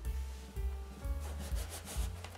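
Hands rubbing and smoothing one-way stretch automotive vinyl over a foam motorcycle seat, with a few quick brushing strokes near the end, over background music.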